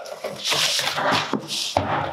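A large cardboard cover scraping and rustling as it is dragged off a wooden shipping crate, with one thump near the end.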